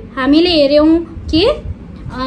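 A woman speaking: two short phrases with a brief pause between them.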